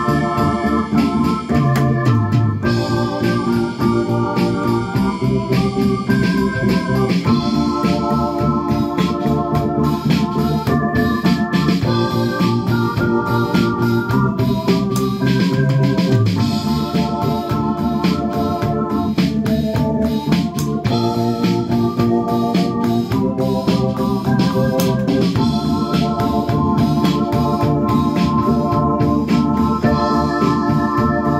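Korg 01/W Pro synthesizer playing an organ sound in held chords, with an electronic drum kit keeping a steady beat under it. A low bass line steps down twice, about two seconds in and again about halfway.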